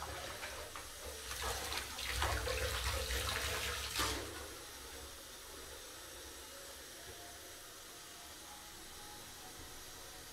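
Hands swishing and splashing water in a foamy bubble bath, a run of irregular sloshes that stops sharply about four seconds in, leaving only a faint steady hiss.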